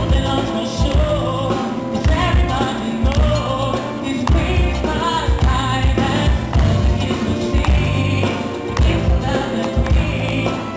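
Live rhythm-symphonic orchestra playing a Christmas pop song, with a male vocalist singing into a microphone over a steady heavy low beat.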